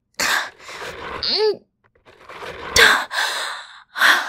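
A woman's strained breathing and a short grunt of effort as she pushes heavy bed frames, then a sudden, loud, forceful exhale about three quarters of the way in.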